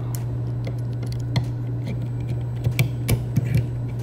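Light clicks and taps of a Klein Tools 7-in-1 nut driver's nesting metal sockets being fitted back together by hand. One click comes about a third of the way in, and a cluster of sharper clicks follows in the second half. A steady low hum runs underneath.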